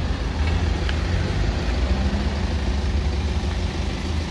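Steady low rumble of a motor vehicle engine idling, with street traffic noise.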